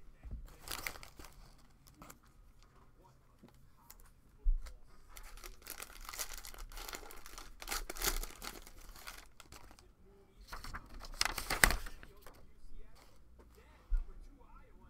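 A cello pack of 2021 Panini Prestige football cards being torn open and crinkled by hand: several bursts of plastic wrapper tearing and crinkling, the loudest near the end.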